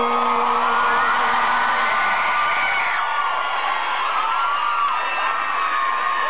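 A concert crowd cheering and screaming, full of high whoops from many voices at once. A held low note dies away about two seconds in.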